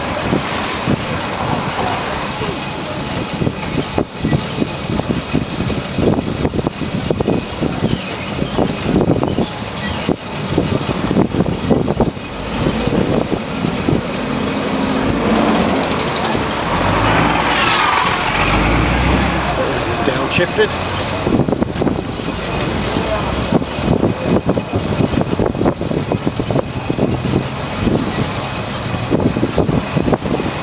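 Ride noise inside an open pedicab moving along a city street: wind buffets the microphone in irregular gusts over tyre and road noise, with traffic around. A louder low rumble swells in the middle and then fades.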